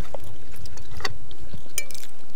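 Metal fork clinking against a ceramic plate a few times, with a short ringing clink near the end, over a steady low rumble.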